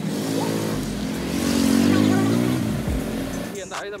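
A motorbike engine passing close by, its note swelling to loudest about two seconds in and then fading away.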